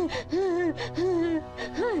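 A woman sobbing: four short, wavering cries broken by gasping breaths, over soft sustained background music.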